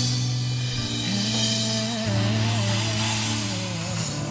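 A song's backing track with an acoustic drum kit played along to it, the cymbals ringing over sustained bass and melody notes.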